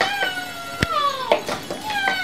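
A high, drawn-out meow-like call sliding slowly down in pitch, then a second one beginning near the end, with a couple of light clicks of plastic toys being handled.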